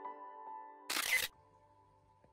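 Soft background piano music trails off, then about a second in comes a short, sharp swish of noise: an editing sound effect marking a scene change. A faint low hum follows.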